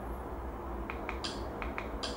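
Small plastic button clicks, as from a remote control being pressed to navigate menus: a quick run of about five clicks starting about a second in, and another sharp click at the end, over a steady low hum.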